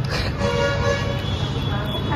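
Street traffic rumbling, with a car horn sounding one short held note about half a second in.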